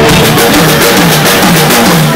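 Live rock band playing loudly: electric guitar, bass guitar and drum kit in an instrumental passage.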